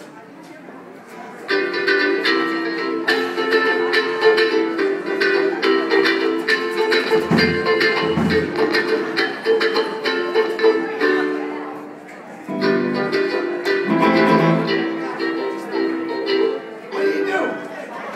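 Live band playing a melody of held notes, starting about a second and a half in, breaking off briefly around twelve seconds and picking up again. Two low thumps come near the middle.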